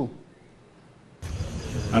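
A quiet gap of about a second, then an outdoor microphone's steady low rumbling background noise cuts in abruptly, with a man starting to speak at the very end.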